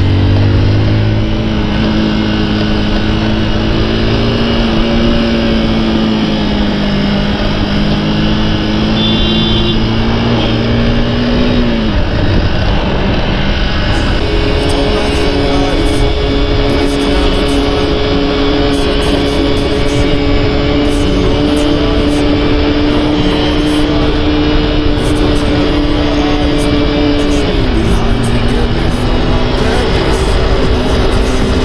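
Kawasaki ZX10R's inline-four engine running at a steady pitch while being ridden, under a dense rush of noise. The engine note dips about twelve seconds in, settles at a higher steady pitch a couple of seconds later, and dips again near the end.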